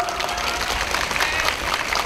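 A crowd applauding: steady clapping from many hands, quieter than the amplified speech around it.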